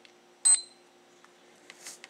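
ReliOn Premier Voice blood glucose meter giving one short, high-pitched beep about half a second in, as the control solution reaches the test strip and the meter starts counting down to its reading. Faint handling sounds near the end.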